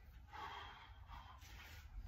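Heavy breathing of a man working hard through a long continuous set of kettlebell half snatches: faint, forceful breaths coming in a steady rhythm.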